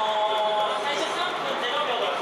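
A man's voice speaking over a stadium public-address system, above a steady background of stadium crowd noise.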